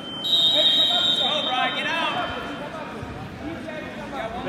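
A long shrill whistle blast that lasts about two seconds, two steady piercing pitches sounding together, over shouting voices.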